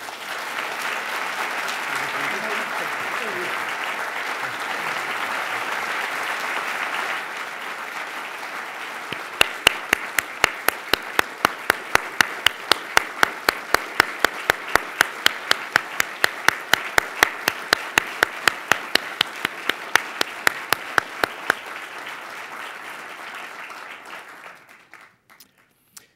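Audience applauding. From about nine seconds in to about twenty-one seconds, one person's claps stand out close to the microphone, sharp and even at about three a second. The applause dies away near the end.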